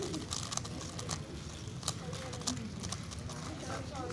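Rapid, irregular clicking of a Galaxy Megaminx V2 M being turned fast during a speedsolve, over a murmur of voices in the hall.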